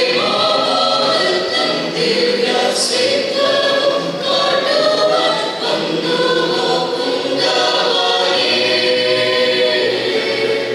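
A mixed choir of women and men singing a Malayalam Christmas carol, in long, held phrases at a steady, full level.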